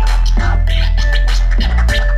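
Live turntable scratching: a record worked back and forth in quick strokes over a loud beat with heavy bass.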